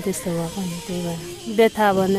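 A woman speaking in a steady, even voice; the sound is only talk.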